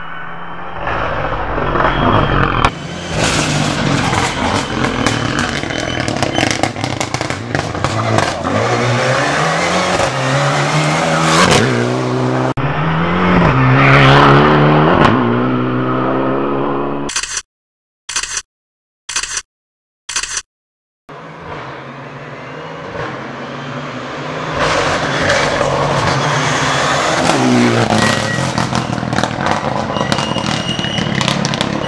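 Rally car engine revving hard and climbing through the gears as the car approaches and passes, its pitch rising and dropping back at each shift. The sound cuts out in four short gaps around the middle, then another stretch of the same engine revving follows.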